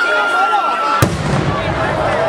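A long whistle gliding slowly down in pitch, cut off about a second in by a single sharp explosive bang, followed by a low rumble, over a crowd's voices.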